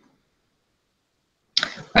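Silence for about a second and a half, with the line cut to nothing between words. Then a brief sharp noise, and a man's voice starting a word ('Nah') near the end.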